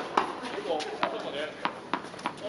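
Tennis ball bounced on a hard court by a server before the serve: a few sharp, separate knocks, with faint voices behind.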